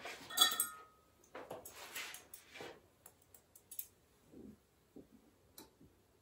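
Stainless steel hemostat clamps clinking against one another, with a short metallic ring about half a second in. This is followed by a stretch of handling noise and then several light clicks from the clamps.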